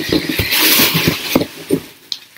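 Thin plastic packaging rustling and crinkling as it is handled and pulled about. The crinkling is densest in the middle and dies away near the end.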